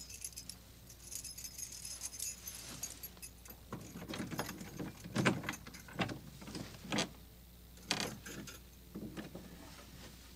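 Keys jangling in a man's hands, followed by several separate knocks against the wooden door and frame as he fumbles at the door.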